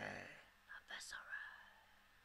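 A man's whispered, breathy vocal with no backing music: a drawn-out word fades away over the first half-second, then a few short hissed fragments follow.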